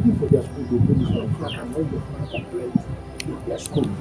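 A man talking over background music, with a few short, falling bird chirps.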